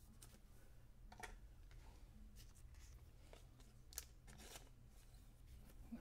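Near silence with a low steady hum, broken by faint, brief rustles and ticks of trading cards being slid into plastic sleeves and set in a holder.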